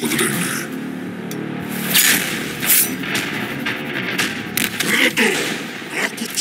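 Movie teaser soundtrack: tense background score with held low tones, cut through by about four sharp percussive hits.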